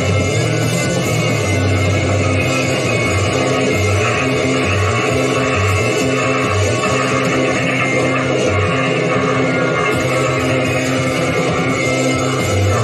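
Progressive rock record playing loud and steady: a full band, with a bass line stepping from note to note underneath.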